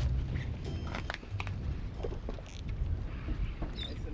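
Low, steady rumble of wind and boat noise on the deck of a drift fishing boat at sea, with a few faint knocks.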